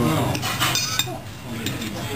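A steel knife and fork scraping and clinking against a ceramic dinner plate while cutting food, with a sharp clink about a second in.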